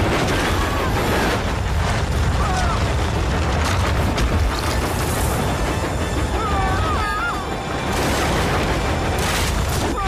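A loud, continuous low rumble under dramatic background music, with a wavering high tone sounding twice in the second half.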